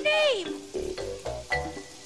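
Playful pitched vocal sounds over a music track: one long falling swoop about the start, then short broken notes, with short low bass notes underneath.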